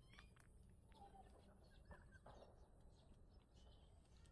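Near silence: a few faint, short bird chirps over quiet outdoor ambience.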